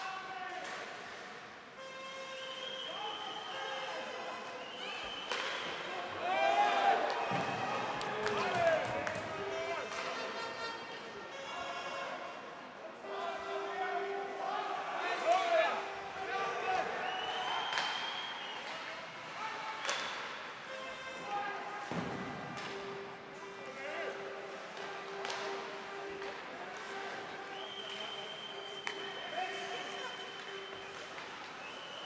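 Ice hockey play heard from the rink: players shouting to each other, with sharp knocks of sticks, puck and bodies against the ice and boards scattered through it.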